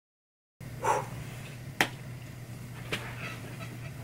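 Dead silence for about half a second, then quiet room tone with a steady low hum; a soft short rustle about a second in, then two sharp clicks about a second apart.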